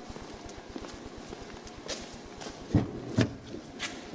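Two heavy thumps about half a second apart, roughly three-quarters of the way in, with a lighter knock just after. They fit a squad car's rear door being unlatched and swung open. Under them runs a steady, fast, low pulsing.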